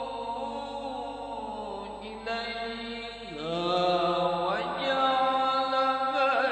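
A male qori reciting the Quran in melodic tilawah style into a microphone, holding long ornamented notes. About halfway through, his voice dips, then climbs higher and grows louder.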